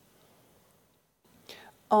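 A pause in a talk at a podium microphone: near-silent room tone, then a short soft intake of breath about a second and a half in, just before speech resumes at the very end.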